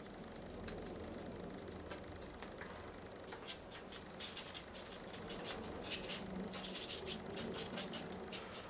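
A fine paintbrush dabbing and flicking on watercolour paper, putting in leaves: a run of faint, quick taps and scratches that come thicker from about three seconds in.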